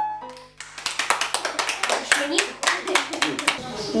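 The last notes of an upright piano die away, then a dense, irregular run of sharp clicks follows, with voices underneath from about halfway.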